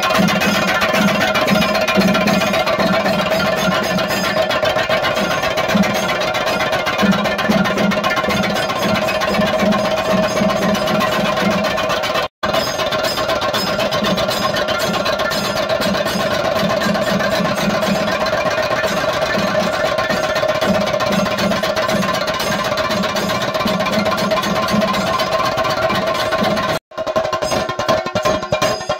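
Kerala temple chenda drums played in a fast, dense, continuous beat, with a steady high drone sounding over them. The sound cuts out for an instant twice, about twelve seconds in and again near the end.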